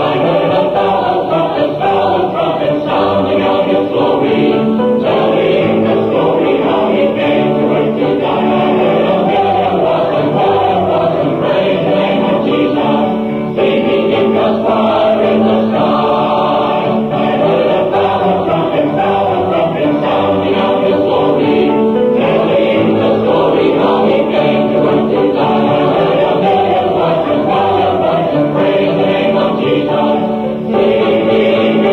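Church adult choir singing in harmony on a 1976 recording.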